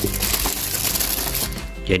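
A plastic bag of leafy vegetables rustling and crinkling as it is handled, dying away near the end, with background music playing underneath.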